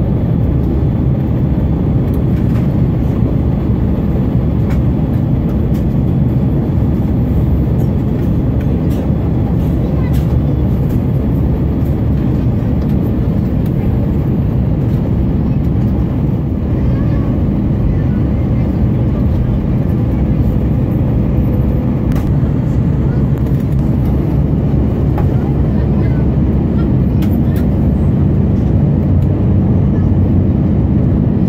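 Steady low rumble of engine and airflow noise inside the cabin of an Airbus A319 airliner on its descent, heard from a window seat beside the engine.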